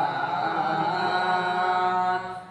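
Unaccompanied male voice singing a devotional Urdu naat, holding one long sustained note with a slight waver.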